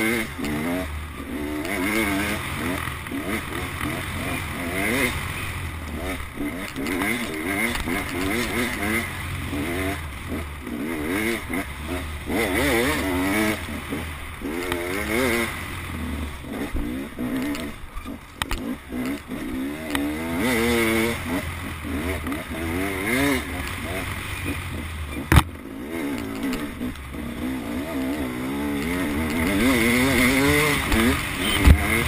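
Enduro dirt bike engine under way on a rough trail, its pitch rising and falling again and again as the rider opens and closes the throttle. A single sharp knock comes about 25 seconds in.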